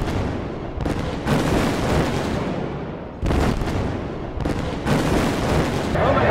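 About five loud booms, like explosion sound effects, each starting suddenly and fading over a second or so.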